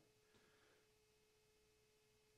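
Near silence: room tone with a faint, steady, single pitched tone.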